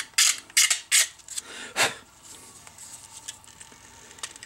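Razor-knife blade scraping support material off a 3D-printed plastic part: about four quick scraping strokes in the first two seconds, then fainter scratching.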